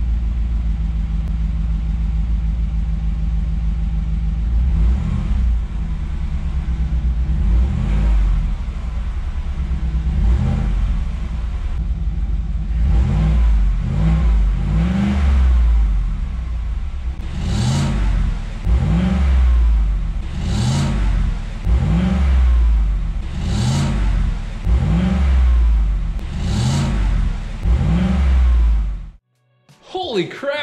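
Exhaust of a 2018 Chevrolet Silverado's 6.2-litre V8, its active exhaust valve held open by a screw, idling cold and then revved in more than a dozen short blips, each a quick rise and fall in pitch. With the valve open the note has a deep tone. The sound cuts off just before the end.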